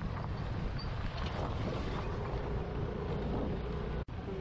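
Road noise from a vehicle moving along a rough dirt road, with wind rumbling steadily on the microphone and the engine running underneath. A faint steady hum comes in about halfway through.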